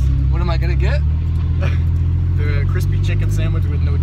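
Car engine and road rumble heard inside a moving car's cabin: a loud, steady low drone, with a few short bits of voice over it.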